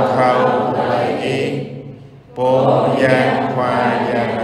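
Slow chanted singing: two long held phrases with a dip in level about two seconds in, over a steady low drone.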